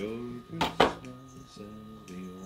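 A kitchen knife cutting a wheel from a lime, knocking twice in quick succession on the surface below a little under a second in, over background music with singing.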